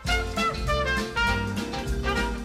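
Background swing-jazz music with brass and a steady drum-kit beat.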